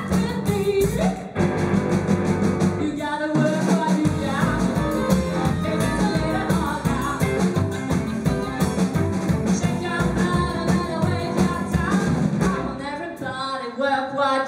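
Live rock-and-roll band playing: electric guitar, upright double bass and drum kit, with a woman singing. The band stops briefly about a second in and again just after three seconds, then plays on.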